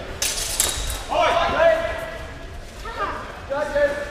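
Steel longswords clashing in a short burst of clatter just after the start, followed by loud shouted calls at about a second in and again near the end.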